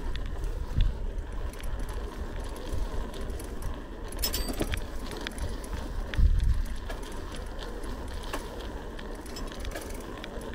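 A bicycle rolling over a paved street, its parts rattling and clinking with many small clicks over a steady low rumble. The rumble swells about a second in and again, loudest, about six seconds in.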